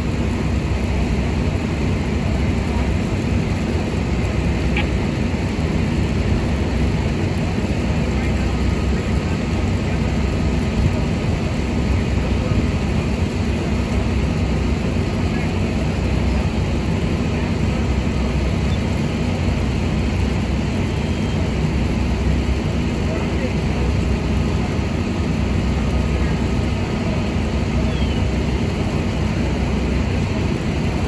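Steady low rumbling drone, even in level throughout, with faint voices in the background.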